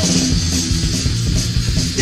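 Punk rock recording: distorted electric guitar and bass guitar playing an instrumental stretch between sung lines.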